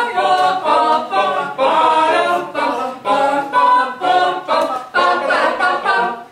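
Mixed choir singing a cappella in harmony, in short phrases broken about every half second.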